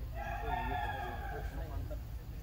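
A single long, steady animal call held for about a second and a half, over faint background voices.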